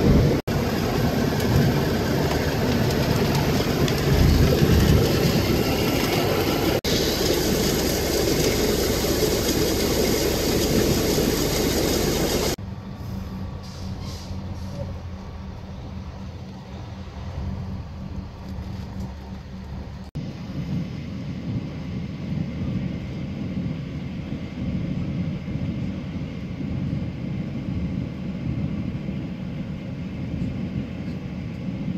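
A vehicle on the move gives off a loud, steady engine and road rumble. About twelve seconds in, it drops abruptly to a quieter, lower rumble.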